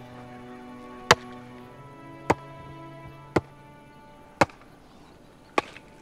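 Five sharp, evenly spaced blows of a hand tool striking a weathered piece of wood, about one a second, over background music with sustained tones.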